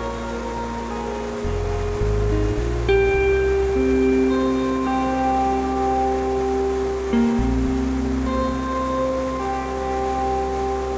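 Slow background music score: long held notes that change every second or two over a deep bass. Beneath it is the steady rush of a large waterfall.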